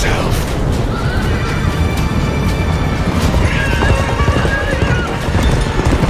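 Horses galloping, with a dense, fast run of hoofbeats and a horse whinnying, under music.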